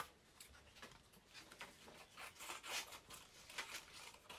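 Scissors cutting through paper in a series of short, irregular snips, faint.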